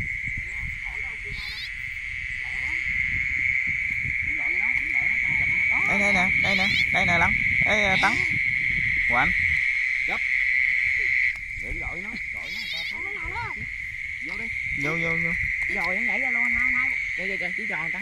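Night chorus of frogs and insects in a wet rice field: a steady high-pitched drone, with bursts of frog calls over it. The drone dips briefly about eleven seconds in.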